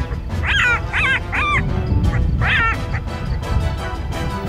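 Black-backed jackal yipping: four short calls that rise and fall in pitch, three in quick succession and one more about a second later, over background music.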